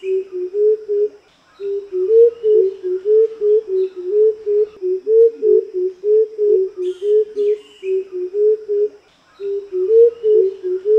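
A coucal's deep hooting call: a long series of low hoots, about three a second, stepping between two pitches, broken by short pauses about a second in and again near the end. Faint chirps of other birds sit behind it.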